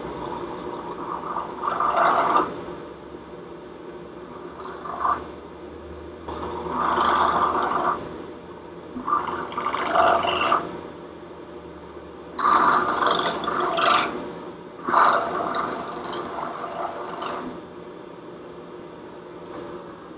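Vertical milling machine spindle running with a steady hum while a small hand-held part is pressed against the bit again and again to deburr its drilled holes, giving about eight short scraping cuts.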